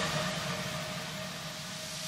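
Speedboat engine running underway, a steady low drone with rushing noise over it that dips in the middle and builds again near the end.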